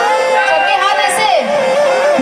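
A woman singing a slow, ornamented vocal line with gliding pitch over a held keyboard melody, in free time without drums.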